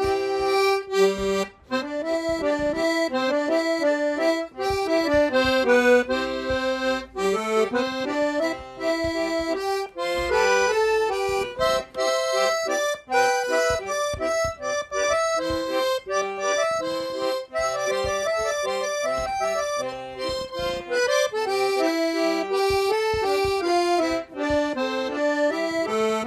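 Solo accordion playing a tune, the melody moving note by note over sustained lower notes.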